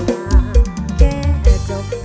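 Live Thai band music with a heavy kick drum, about three beats a second, under a sung melody from a woman's voice.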